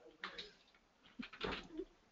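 Faint computer keyboard keystrokes as a word is typed, with a brief faint vocal sound in the second half.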